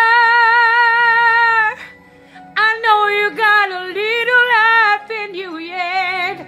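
A woman singing solo over a faint karaoke backing track: a long held note with vibrato, a short break about two seconds in, then a run of quick sliding, ornamented notes.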